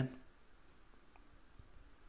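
Near silence: faint room tone with two faint clicks about half a second apart, a little under a second in.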